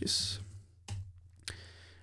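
A short breath near the start, then two sharp computer keyboard keystrokes about half a second apart, over a faint steady low hum.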